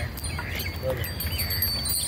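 Small metal bells on a bullock's neck jingle and ring as it is yoked to a cart. Birds chirp over them, with a low rumble underneath.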